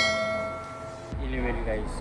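A single bell ding that rings out and fades over about a second: the notification-bell chime of a subscribe-button animation.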